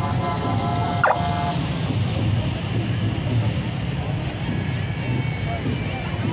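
Engines of a slow-moving police motorcycle escort and patrol truck in a parade, a steady low rumble under the voices of a crowd. A held pitched tone sounds in the first second and a half and stops, with a short sharp burst about a second in.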